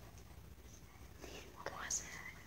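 Faint whispering, picking up in the second half with a sharp hissing sound just before the end.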